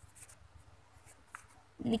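Pen scratching on lined paper in faint, short strokes as words are written by hand.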